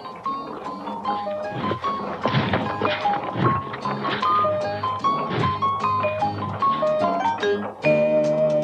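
Light background music: a bouncy melody of short notes over a low accompaniment, with a few dull thuds mixed in.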